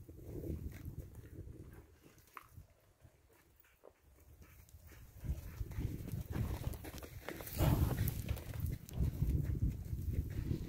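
Cattle and a working dog moving about a dirt yard: shuffling hooves and paws with low rumbling on the microphone. It dips quiet in the middle and grows louder from about halfway through, with a short hiss near the end.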